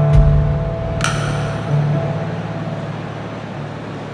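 Stage keyboard with a piano sound holding the song's final low chord as it slowly dies away, with one higher note struck about a second in.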